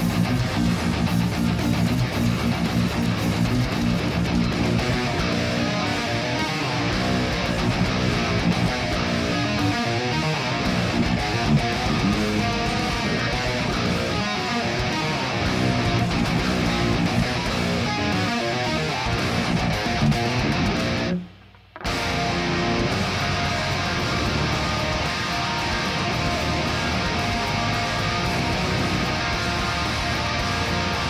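Seven-string electric guitar (Mayones Setius M7 through a Kemper profiling amp) playing fast, heavily downpicked progressive-metal riffs. The music stops dead for about half a second around twenty-one seconds in, then carries on.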